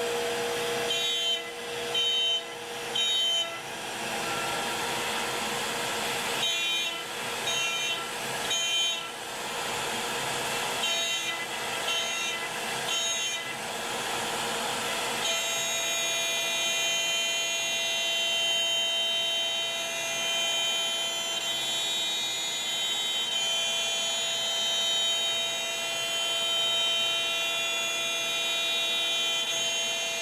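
CNC router cutting parts from a sheet board, with a steady whine of several tones over the hiss of its dust extraction. Through the first half the whine comes in short bursts, three at a time about a second apart. From about halfway it holds as one unbroken tone.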